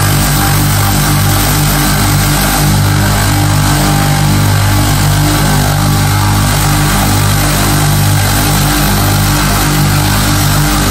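Belt grinder running with a steady motor hum while a steel knife blade is pressed against its aluminium oxide belt, giving a continuous grinding hiss over the hum.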